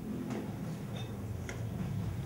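A few light, irregular clicks over a low steady hum.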